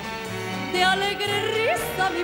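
A woman singing an Andalusian copla over band accompaniment with a repeating bass note. Near the end her voice slides up onto a higher note.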